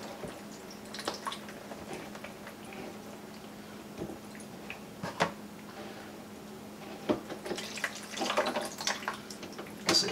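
Water dripping and trickling out of a loosened PVC sink-drain P-trap into a bowl: the standing water backed up behind the clog draining out. Scattered clicks and knocks of hands on the plastic pipe, busier near the end, over a faint steady hum.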